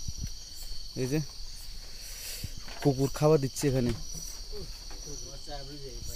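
Night insects, crickets, chirping in a steady high-pitched chorus, with short spoken phrases over it.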